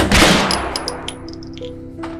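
A fist banging hard on a door: one heavy bang at the start, then a few lighter knocks within the first second, over soft, slow piano music.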